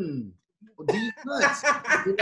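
People laughing hard: a falling cry of laughter, a short pause, then a run of short bursts of laughter.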